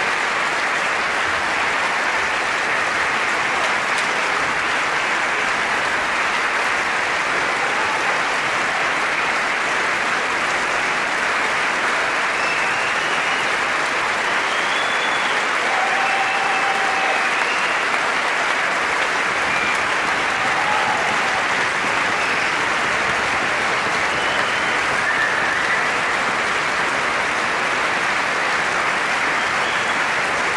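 Sustained applause from a large concert-hall audience, dense and steady.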